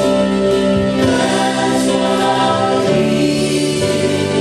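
Christian song playing: several voices singing together over instrumental backing, with long held notes.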